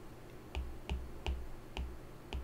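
Faint, irregular ticks of a stylus tip tapping a tablet's glass screen during handwriting, about two light taps a second.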